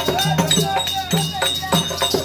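Therukoothu accompaniment music: a two-headed barrel drum playing fast, pitched strokes, with quick metallic clinks on the beat and a bending melody line over it.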